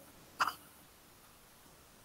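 A single brief, sharp throat sound from a person about half a second in, then near silence with only room tone.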